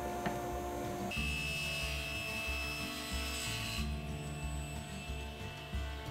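Table saw blade cutting through a small walnut tray part for its joinery: a high, hissing cut that starts about a second in and stops abruptly after nearly three seconds, over background music.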